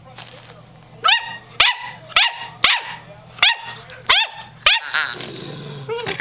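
German Shorthaired Pointer puppy barking: seven short, high-pitched yips about two a second, each rising sharply and then falling, starting about a second in.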